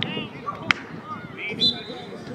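Players and onlookers calling out on an open field, with a single sharp smack about two-thirds of a second in and a short high-pitched call near the end.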